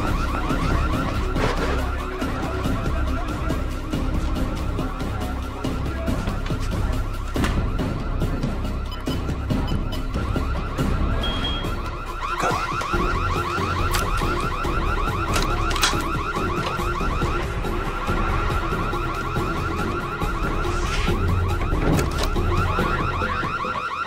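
A car alarm sounding with a fast, repeating warbling tone, with a music score underneath.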